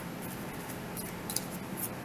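Tarot cards being shuffled by hand: soft rustling with two brief crisp card snaps in the second half.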